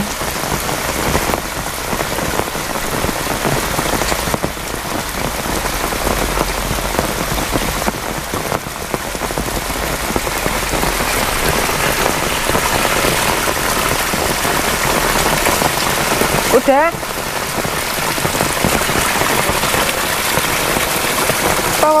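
Heavy rain falling steadily on a waterlogged yard and its puddles.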